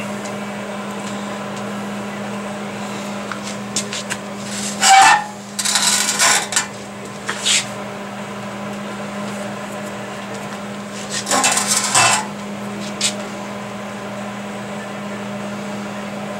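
A steady low hum of shop equipment, with scattered bursts of rustling and light clicks and clinks from handling, loudest about five seconds in and again about eleven to twelve seconds in.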